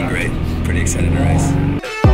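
A man talking over the steady low rumble of a bus cabin on the move; the sound cuts off sharply near the end.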